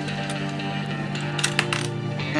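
Background guitar music runs steadily. About one and a half seconds in, a few sharp plastic clicks sound as the LEGO stagecoach's pin-triggered rear compartment is pressed and its lid springs open.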